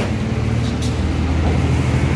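Steady low rumble of a running vehicle engine.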